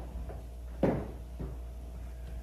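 A few dull knocks or thumps in a room. The loudest comes a little under a second in and a weaker one about half a second later, over a steady low hum.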